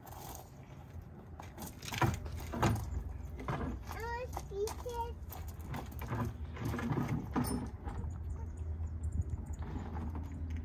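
A toddler's footsteps crunching on gravel and irregular knocks of a plastic toy gas pump and its hose being carried, set down and handled, with a few short child vocal sounds in the middle.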